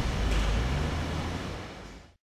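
Race car engine noise, strongest in the low end, fading out steadily over two seconds.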